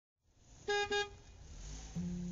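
A vehicle horn gives two short toots just under a second in, followed by a low rumble that slowly builds.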